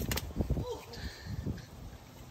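A sharp slap just after the start as a skinned rattlesnake's body is thrown down onto concrete, followed by a few soft knocks and scuffs.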